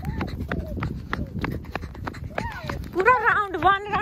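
Running footsteps on a rubber running track, about three steps a second. Near the end a small child's high voice calls out for about a second.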